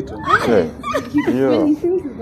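Excited voices exclaiming and laughing amid conversation, with one high, upward-sliding squeal of a voice about half a second in.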